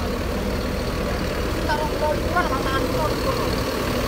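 Mercedes-Benz diesel engine of a parked coach idling steadily, a low even hum, running smoothly.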